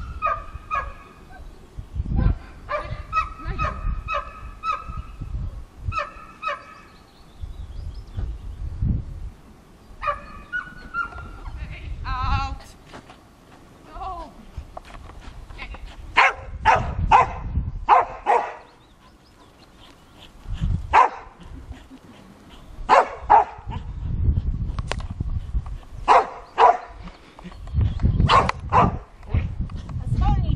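Geese honking repeatedly through the first part, then a dog barking in short sharp barks, in clusters, through the second half.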